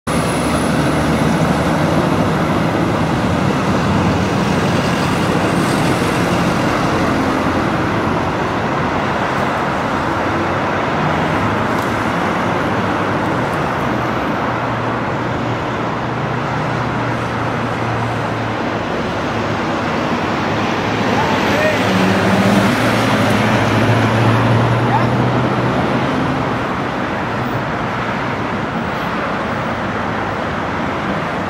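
Road traffic on a busy city street, cars and a lorry passing with a steady engine hum and tyre noise. It swells louder for a few seconds about three-quarters of the way through.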